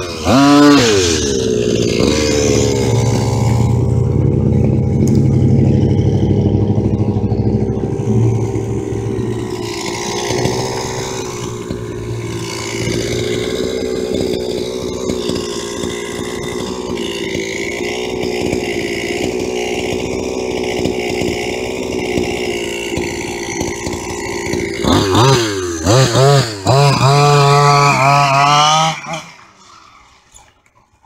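Modified 30.5cc two-stroke gasoline engine of an HPI Baja RC car: a quick rev at the start, then running steadily for over twenty seconds, then a run of sharp throttle blips in the last few seconds that drops away abruptly just before the end.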